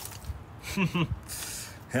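A man's short two-part exclamation about a second in, falling in pitch, followed by a soft hiss.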